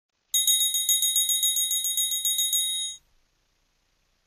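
A small metal bell rung rapidly, about seven strikes a second, high and bright, for about two and a half seconds, then stopping abruptly.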